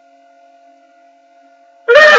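A faint steady hum, then near the end a sudden loud, high-pitched wail from a woman crying, its pitch wavering.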